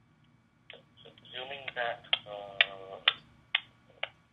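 A voice coming over a telephone line, thin and cut off in the highs, for about two seconds starting just over a second in, mixed with a run of sharp clicks. It starts after a short near-silent pause.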